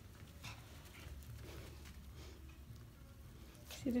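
Faint, irregular light taps from a small dog moving about on carpet tiles, over a low steady room hum.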